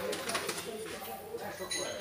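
Faint background voices murmuring in a large covered hall, with a brief high squeak or chirp near the end.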